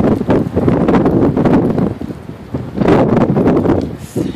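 Wind buffeting a handheld phone's microphone in loud, rough gusts, heaviest through the first two seconds and again about three seconds in.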